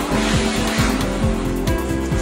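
A dog splashing down into a pond, a loud rush of water that fades over about a second and a half, over background music with a steady beat.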